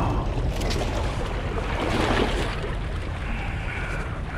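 Small waves washing against the rocks of a rocky shore, with wind rumbling on the microphone; a louder rush of water about two seconds in.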